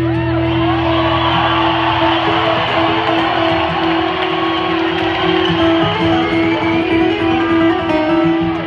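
Solo twelve-string acoustic guitar playing an instrumental, amplified through an arena sound system: a steady drone note rings on under fast picked and strummed patterns.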